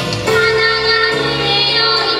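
Two girls singing a children's song together into microphones over instrumental accompaniment, holding a long note through the first second before the melody moves on.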